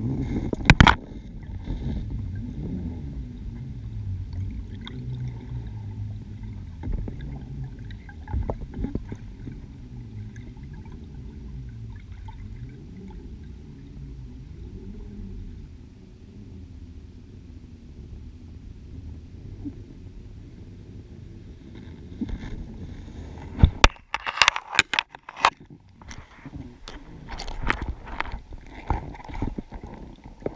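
Muffled underwater sound picked up through a camera's waterproof housing at depth: a steady low rumble and gurgle of water, broken by scattered sharp clicks and knocks, with a dense cluster of them a little before the end.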